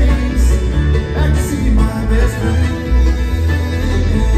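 Live bluegrass band playing an instrumental passage, with acoustic guitar and upright bass.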